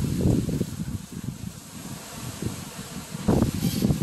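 Strong gusty wind buffeting the microphone: a low, uneven rumble, heavy at first, easing off for a couple of seconds, then gusting up again near the end.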